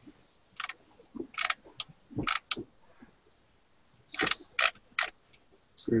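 About a dozen irregular sharp clicks spread across several seconds, from a computer mouse being clicked and scrolled.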